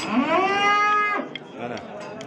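Young cattle mooing once: a call of about a second that rises in pitch at the start, holds steady, then stops.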